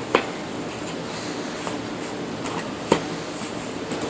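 Puzzle pieces tapping against an inset puzzle board as a toddler fits them in: two short sharp clicks about three seconds apart and a fainter tap between them, over a steady background hiss.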